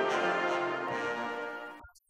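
Scout brass orchestra playing a sustained chord that fades and then cuts off abruptly near the end.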